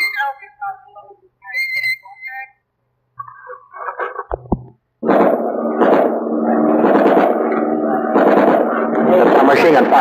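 Loudspeaker appeal to surrender: an amplified voice, loud and distorted, starts suddenly about halfway in and runs on without a break. Before it come a few seconds of faint, broken voices and a short dropout.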